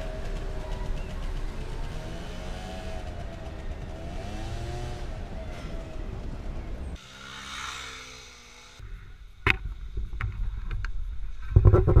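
Steady rumble of city road traffic, cars and scooters moving along a busy street. About seven seconds in it cuts off abruptly to a quieter street, with a sharp click a couple of seconds later and loud handling noise near the end.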